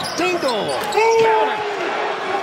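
Basketball bouncing on a hardwood court during play, with sneakers squeaking in gliding pitches, one squeak held for about half a second around a second in.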